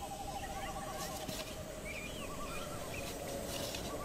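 Forest ambience from a film soundtrack: a long, steady warbling trill with scattered short bird chirps over a low, even background hiss.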